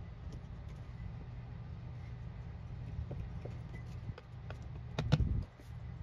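Handling noise from clear rubber stamps and an acrylic stamping block on paper: soft rubbing and light taps over a steady low hum, with a louder knock about five seconds in.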